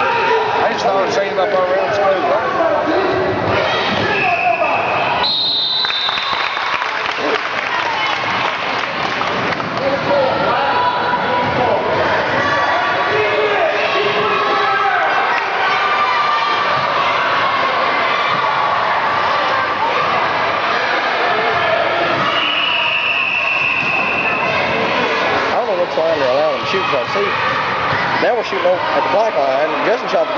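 Crowd of spectators talking and calling out in an echoing gym during a youth basketball game, with a basketball bouncing on the hardwood floor. A few short high-pitched squeals come through near the start, and a longer one about two-thirds of the way through.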